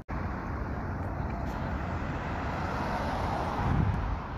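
Steady outdoor street noise of road traffic, swelling a little near the end.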